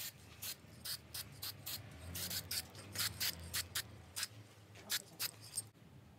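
Aerosol spray-paint can being sprayed onto a metal sculpture in short hissing puffs, about three a second, stopping abruptly near the end.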